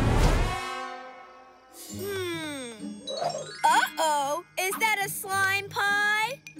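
Cartoon sound effects over a children's music score: a loud whooshing hit at the start, a falling comic glide about two seconds in, then wordless, wavering vocal cries in the second half.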